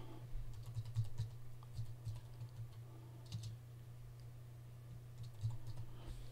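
Faint, irregular keystrokes on a computer keyboard, a burst of typing such as entering a file name.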